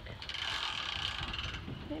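Boat trailer hand winch turning, its ratchet pawl clicking in a fast, even run for about a second and a half.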